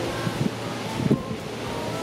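Wind blowing across the microphone, a steady rushing noise, with a couple of brief soft vocal sounds under it.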